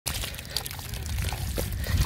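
Wet mud and water squelching and trickling, with many small irregular wet clicks and a low rumble underneath that grows toward the end.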